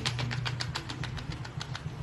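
Quick, light taps of a paintbrush dabbing white paint onto paper, about seven a second, stopping shortly before the end, over a steady low hum.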